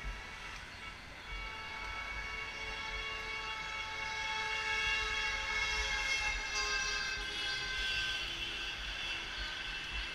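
A long, sustained vehicle horn sounding several tones at once. It swells over the first few seconds, peaks in the middle and drifts slowly down in pitch.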